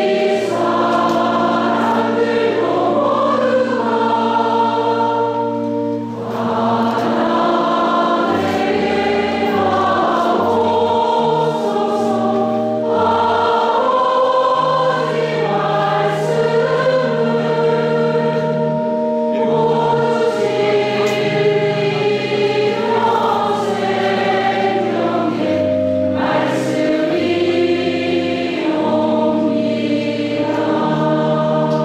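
Choir singing a church hymn over sustained held chords, the bass notes changing in steps, with a short pause between phrases about six seconds in.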